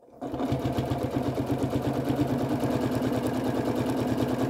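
Domestic electric sewing machine starting up about a quarter second in, then stitching at a steady, even pace with a rapid regular rhythm of needle strokes as it sews a binding strip through the quilt layers.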